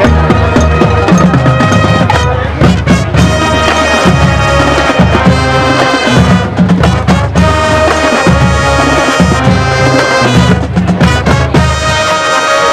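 Marching band playing on the field: brass sections with drumline and front-ensemble percussion, loud and steady.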